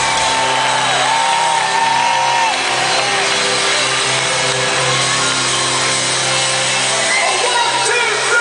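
Live rock band playing sustained chords in an arena, with audience voices singing and shouting along close to the recorder.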